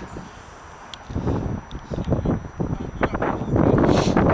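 Wind buffeting the microphone: irregular low rumbling gusts that start about a second in and grow louder toward the end.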